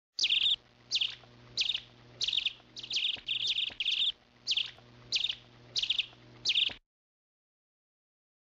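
A bird chirping: a short, high call repeated about every half second, stopping abruptly near the end.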